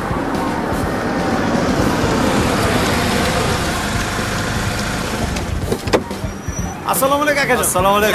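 A car driving up along the road and slowing, its tyre and engine noise swelling and then easing off. A single sharp knock comes about six seconds in.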